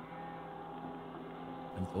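A steady hum made of several held tones, at a low level; a man's voice comes in near the end.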